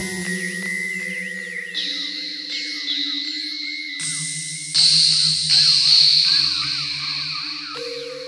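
Experimental electronic synthesizer music: layered sustained drone tones that step to new pitches every second or two, with quick wavering chirps above them. It grows louder about five seconds in.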